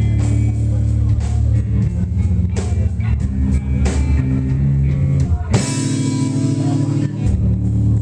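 A rock band playing live and loud: electric guitars, bass guitar and drum kit, with a loud crashing hit about five and a half seconds in.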